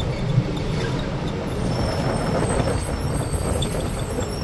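Steady engine and road noise of a moving road vehicle, a low rumble with no breaks.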